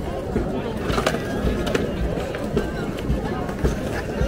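Skateboards rolling and clacking on stone paving, with several sharp board knocks, under the chatter of a crowd.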